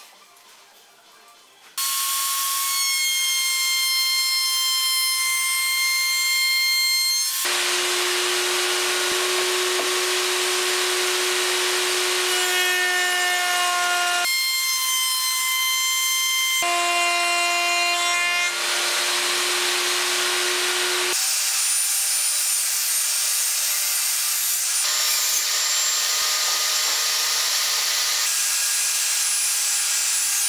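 Table saw running and cutting through a wooden board. It comes in abruptly about two seconds in, as a loud steady whine over cutting noise, and the pitch of the whine jumps suddenly several times.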